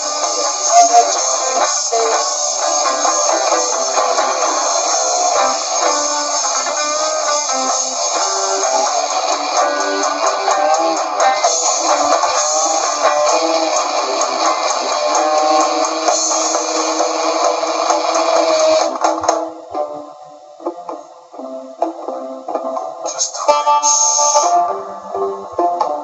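Loud instrumental noise-rock from electric guitars and drums, with no singing. The dense playing drops away about two-thirds of the way through to sparse, choppy guitar, then builds again near the end.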